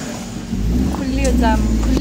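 Voices talking inside a moving car, over a low rumble of road and engine noise that swells about half a second in.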